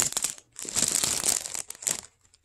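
Plastic cookie wrapper crinkling as it is handled, in two bursts with a short break about half a second in.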